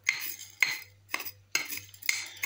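Metal tablespoon clinking against a glass jar several times, about half a second apart, as coarse rock salt is shaken off it into the jar.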